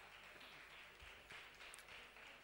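Faint, sparse hand clapping from a few people.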